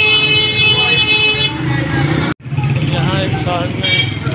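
A vehicle horn sounds one steady high note for about a second and a half as a van passes close, over a low engine rumble from the street traffic. The sound cuts out briefly just past halfway, then voices follow.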